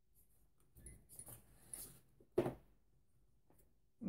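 Faint handling sounds of small reloading-kit parts on a bench: light rustles and clicks, with one short, louder knock about two and a half seconds in.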